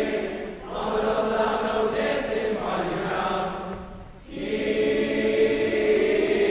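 Large choir singing sustained notes, with brief pauses between phrases just after half a second in and at about four seconds.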